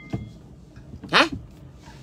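A woman's short questioning "hein?" exclamation about a second in, its pitch rising then falling, heard inside a car over a low steady cabin hum.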